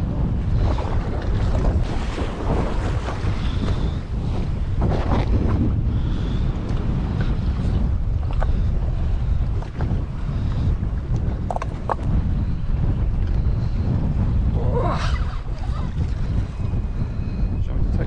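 Wind buffeting the microphone on a boat at sea, a steady low rumble, with the sea and the boat underneath and a few faint ticks now and then.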